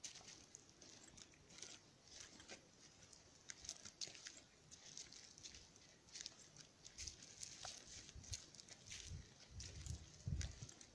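Faint footsteps on a woodland path: leaf litter and twigs crackling underfoot in scattered clicks, with dull low thuds of footfalls growing stronger from about seven seconds in.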